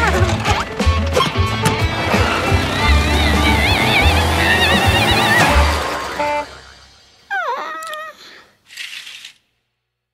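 Cartoon soundtrack: busy music with sound effects and a heavy bass that fades out about six to seven seconds in. Then a short cartoon voice sound falling in pitch, and a brief hiss near the end.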